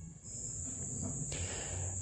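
A steady high-pitched whine over faint low background noise, with a soft hiss coming in past the middle.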